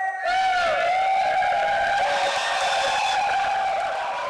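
Tyres screeching in a string of squeals that rise and fall in pitch over a rushing noise, starting to fade near the end.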